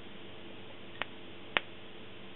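Two sharp electrical snaps about half a second apart, the second louder, as a capacitor bank charged to 15 volts discharges through the leads into an AMD CPU's already burnt die area.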